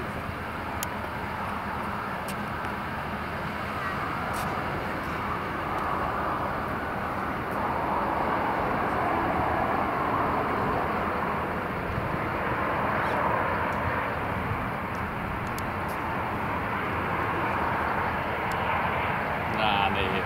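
Boeing 737-300 airliner's CFM56 turbofan engines giving a steady rushing roar as the jet rolls out and slows on the runway just after touchdown. The roar grows louder over the first half.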